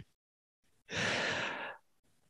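A man's breathy sigh: one exhale about a second long, starting about a second in.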